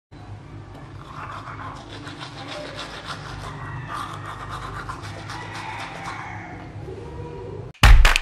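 Toothbrush scrubbing teeth in quick back-and-forth strokes, with faint music underneath. Just before the end, loud music with heavy bass beats cuts in.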